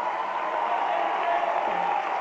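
Audience applauding and cheering, a steady, even din.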